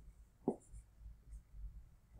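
Faint pen strokes of a digital stylus writing on a drawing surface, with one clearer tap about half a second in.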